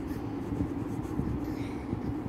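A pen writing cursive on ruled notebook paper, a soft continuous scratching of the tip across the page, over a steady low hum.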